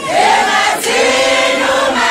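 A crowd of fans singing a maskandi song together, many voices on one melody in two drawn-out phrases.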